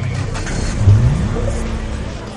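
Title-sequence soundtrack: a dense, low music bed with a pitched sweep that rises about a second in and then holds.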